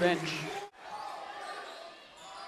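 Basketball gym ambience: a faint, steady background of distant voices and court noise, which takes over after a commentator's word ends and the sound cuts off sharply in an edit.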